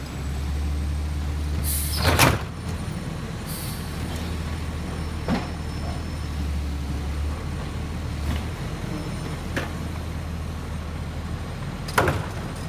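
Automated side-loader garbage truck's engine running steadily, rising and falling as the hydraulic arm works the carts. A loud clunk with a hiss comes about two seconds in, followed by lighter knocks from the arm and cart.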